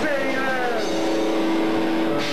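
Amateur rock band playing live with electric guitars, drums and vocals: notes that slide down in pitch give way to a long held note about a second in.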